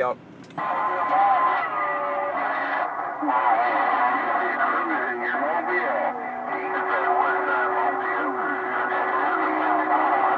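A President HR2510 radio receiving on CB channel 6 (27.025 MHz), with several stations transmitting over each other. Garbled, overlapping voices are mixed with steady whistling heterodyne tones through the radio's speaker, coming in about half a second in after the operator unkeys.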